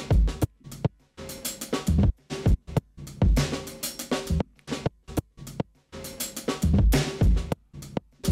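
A drum-kit loop with kick and snare playing through a noise gate in Flip mode with a high return setting. The drums come through in choppy bursts that cut off abruptly into short silent gaps; it sounds a bit funny.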